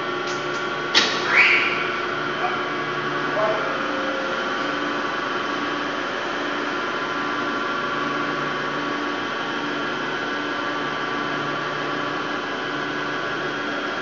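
Steady machine hum of a chiller plant room, made of many steady tones, with a faint low tone pulsing on and off about once a second. A single sharp click sounds about a second in.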